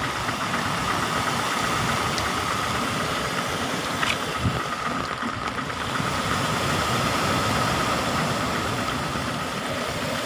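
Storm rain and gusting wind, the wind rumbling on the phone's microphone, with a steady high-pitched whine underneath.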